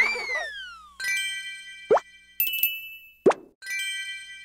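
Cartoon sound effects: a whistle-like tone gliding down in pitch, then a series of bell-like chimes broken by two quick upward-sweeping pops.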